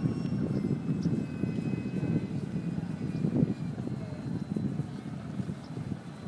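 Faint whine of a radio-controlled E-flite Habu ducted-fan jet flying at a distance, its thin high tones drifting slightly in pitch, over a steady low rumble of wind on the microphone.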